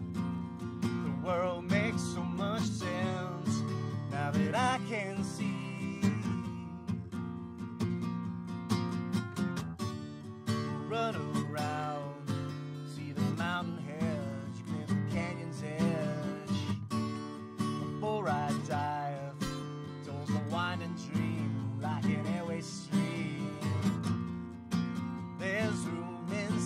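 Acoustic guitar strummed steadily, with a man's voice singing over it in long, wavering held notes.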